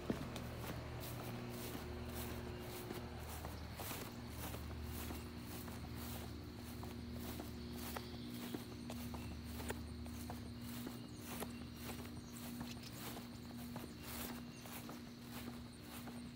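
Footsteps walking across a grass lawn at a steady pace, about two steps a second, over a steady low hum.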